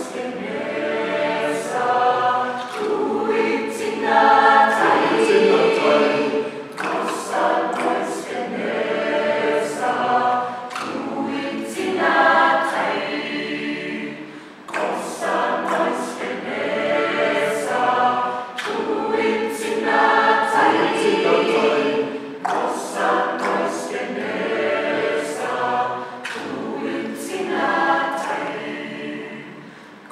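A mixed choir of men and women singing a traditional Nama song unaccompanied, in phrases that swell and ebb, with frequent sharp consonant attacks.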